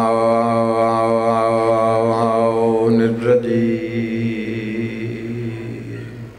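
A man chanting through a microphone and loudspeakers, holding one long wavering note that breaks off about three seconds in. The hall's echo of it then fades away under a faint steady high tone.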